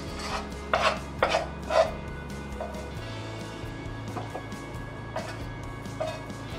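Cooked potatoes being scooped from a saucepan onto a plate, with three sharp knocks against the pan in the first two seconds and a few lighter ones later. Soft background music plays underneath.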